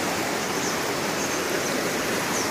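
Mountain stream rushing over rocks, a steady wash of water noise; the stream is running full after heavy rain.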